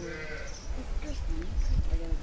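Livestock bleating, wavering calls over a low rumble.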